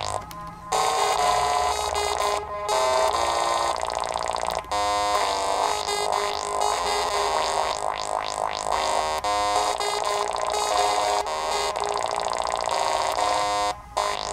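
littleBits Synth Kit modular synthesizer played by hand on its keyboard module: a run of electronic notes stepping from pitch to pitch every fraction of a second, with a few short breaks, one just after the start and one near the end.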